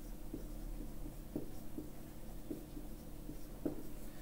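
Marker pen writing on a whiteboard: a string of short, faint strokes and taps over a steady low hum.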